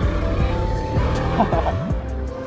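Background music, with a 250 cc motorcycle engine running underneath as the bike rides along; a tone swoops down and back up near the end.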